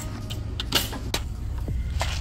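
Groceries being handled over a wire shopping cart: a short rustle-and-knock of packaging about three-quarters of a second in and a sharp click just after, over a steady low rumble.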